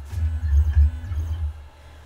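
ATEZR P10 laser engraver's gantry stepper motors driving the head around the job outline during a frame pass. It is a low hum with two short whines that rise and fall as the head speeds up and slows, and it dies down about a second and a half in.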